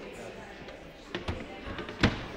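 Faint conversation in the background, with two sharp knocks about a second in and a few softer knocks near the end.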